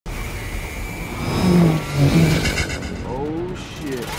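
Film sound effects of alien spacecraft descending: a deep rumble under pitched whooshes that glide up and down, loudest about a second and a half in.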